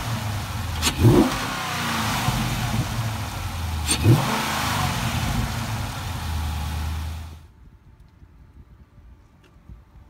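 Dodge Challenger Scat Pack's 392 cubic-inch (6.4 L) HEMI V8, fitted with an Airaid cold air intake, idling and blipped twice, the revs rising sharply and falling back each time, about a second and four seconds in. The engine cuts off suddenly about seven seconds in.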